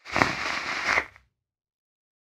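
A draw on a vape through a Dead Rabbit rebuildable dripping atomizer, the coil sizzling as air is pulled through it for about a second before it stops.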